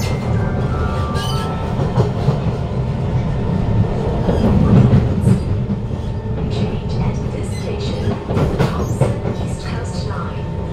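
Interior running noise of a Kawasaki Heavy Industries C151 train car (GTO-VVVF traction): the motor's stepped whine fades out just at the start, leaving a loud steady wheel-on-rail rumble with scattered rail clicks. The rumble peaks about halfway through.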